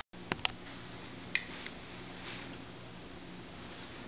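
A few light clicks over a faint steady hum: two clicks in the first half second and two more about a second later.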